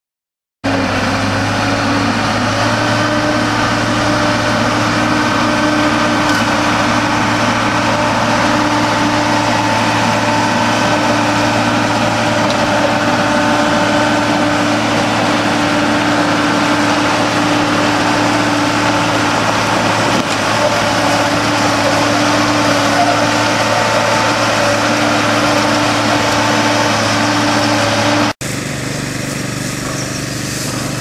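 Motor grader's diesel engine running steadily under load as its scarifier rips up the old gravel road surface. Near the end it cuts abruptly to a quieter, different engine sound.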